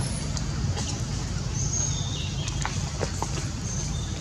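Outdoor ambience: a steady low rumble with a few short, high chirps about halfway through and again near the end.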